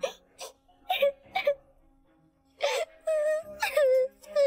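A young girl crying: a few short sobs in the first second and a half, then a long, wavering wail from about two and a half seconds in, over soft background music.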